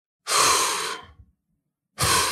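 A man's two heavy exhalations close into a handheld microphone: a long sigh starting about a quarter second in and fading over about a second, then a shorter one near the end.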